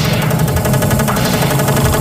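Happy hardcore dance track in a breakdown. The kick drum drops out, leaving a buzzing bass synth under a sustained chord, and the treble dulls in a quick downward sweep at the start.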